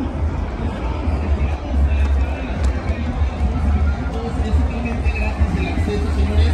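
Chatter of a large crowd of football fans, with music playing and a steady low rumble underneath.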